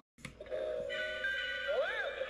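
Animated skeleton seesaw Halloween decoration set off by its test button, starting its sound: a click, then an electronic tune of held chime-like notes, with a rising-and-falling glide near the end.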